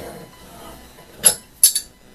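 Two sharp metallic clinks with a brief high ring, under half a second apart, as a steel RIDGID 31055 pipe wrench is released and lifted off a stainless steel pipe.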